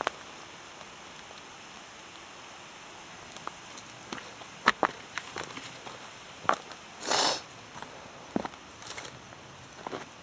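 Footsteps of a hiker on a forest path, irregular knocks and crunches underfoot over a faint steady hiss, with a longer scuff about seven seconds in.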